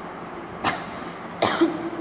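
A woman coughing twice, a little under a second apart.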